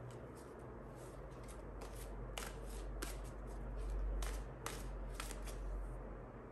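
A tarot deck being shuffled by hand in an overhand shuffle: a soft, continuous rustle of cards with a few sharp card snaps. A low rumble swells about four seconds in.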